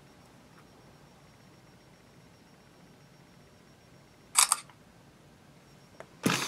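Smartphone camera shutter sound, one quick two-part click about four seconds in, marking a photo being taken, over faint room tone.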